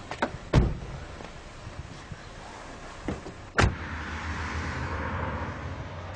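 A car door banged shut hard, with two heavy thumps about three seconds apart, because the door needs a real bang to close. After that comes the steady low rumble of the car's cabin with the engine running.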